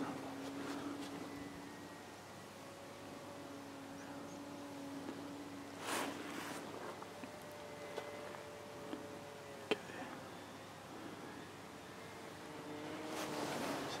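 Faint hum of the Skua FPV plane's electric motor and propeller flying high overhead, its pitch shifting up and down as it cruises. A brief rush of noise about six seconds in, and a few soft clicks.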